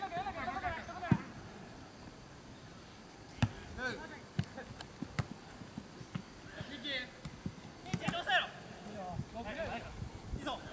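Football being kicked during play: a series of sharp knocks, the loudest about a second in. Players' shouts call out across the field between the kicks.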